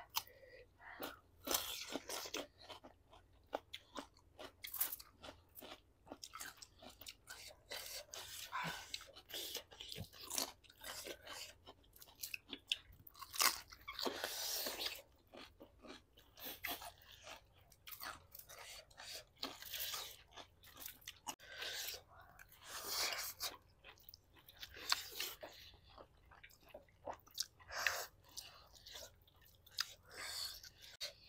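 Close-miked eating: crunchy bites into corn on the cob and cucumber, and wet chewing, in short irregular bursts.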